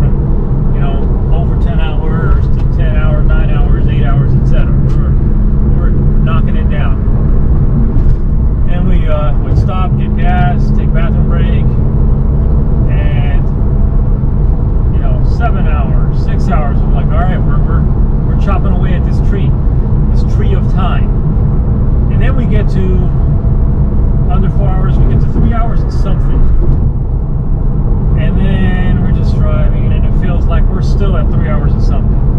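Steady engine and tyre drone heard inside a car's cabin while cruising at highway speed.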